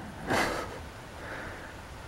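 A short, breathy puff of air, like a sniff or exhale, about half a second in, over faint outdoor background.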